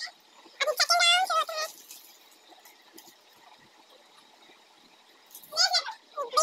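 A child's high voice speaking briefly about half a second in and again just before the end, with a quiet stretch between.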